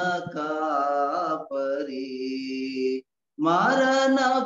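A man singing a Telugu Christian hymn unaccompanied, his voice holding long, sliding notes. The sound drops out completely for a moment about three seconds in.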